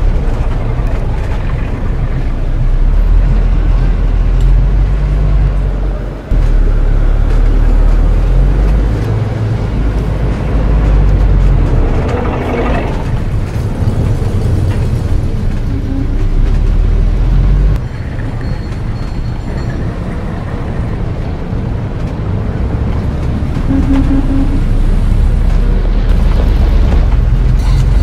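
Added street ambience: a steady low rumble like motor traffic, shifting in level with each cut, with a few short tones in the middle and near the end.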